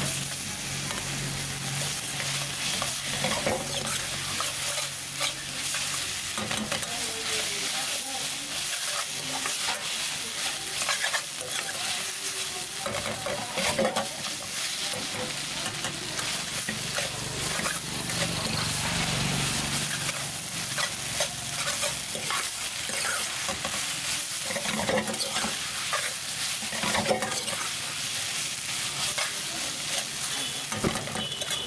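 Chowmein noodles frying in a steel wok with a steady sizzle. A steel ladle stirs and tosses them, clinking and scraping against the pan again and again, as the sauces and spices are mixed in at the last stage of cooking.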